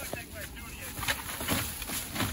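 Thin plastic shopping bag rustling and crinkling as it is handled and opened, with a low wind rumble on the microphone.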